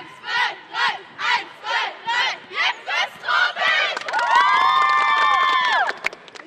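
A youth girls' basketball team in a huddle chanting together, rhythmic shouts about twice a second that quicken, then breaking into one long shared cheer held for nearly two seconds that cuts off suddenly.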